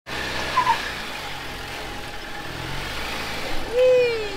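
Stock four-door Jeep Wrangler's engine running steadily at low speed as it crawls over rock ledges. Near the end, a voice calls out in one drawn-out cry that rises and then falls in pitch.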